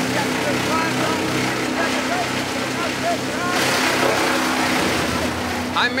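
Wood chipper running, its engine a steady drone, while a cut Christmas tree is fed in and shredded. The chipping grows louder and harsher about three and a half seconds in, then eases just before the end.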